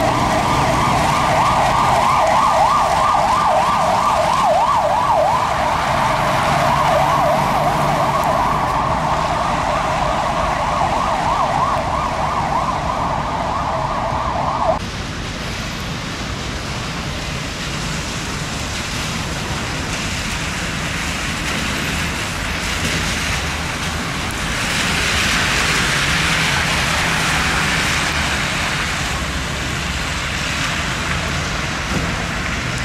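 An emergency-vehicle siren rapidly warbling up and down, cutting off suddenly about halfway through. After it, road traffic on a wet road, swelling near the end as a bus passes.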